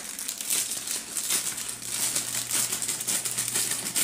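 Thin clear plastic packaging bag crinkling irregularly as it is handled and pulled open.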